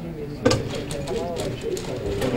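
Indistinct background conversation: several people talking among themselves, with a brief knock about half a second in.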